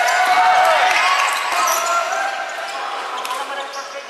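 Players' indoor court shoes squeaking on a wooden gym floor in many short rising and falling chirps, with a few sharp clicks of floorball sticks and ball. The squeaking is busiest in the first two seconds and thins out after that.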